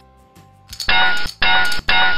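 Toy reflex hammer from a play doctor kit sounding its electronic chime as it taps: three short identical chimes about half a second apart, starting about a second in.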